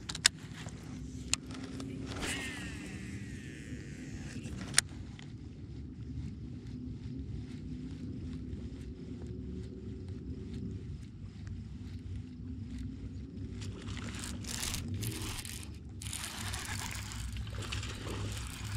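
Baitcasting reel being cranked to retrieve a lure: a fast fine ticking from the reel over a low steady rumble, with a few sharp clicks in the first five seconds and rougher, louder handling noise in the last few seconds.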